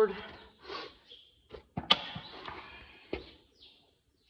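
A few rasping strokes of a farrier's rasp across a horse's hoof wall, rolling the toe after a trim. The longest stroke lasts about a second, and there are sharp knocks near two seconds in and again about a second later.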